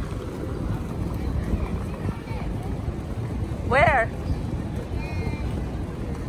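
Wind rumbling on a phone microphone outdoors, with a short voiced call from someone nearby about four seconds in and faint voices around it.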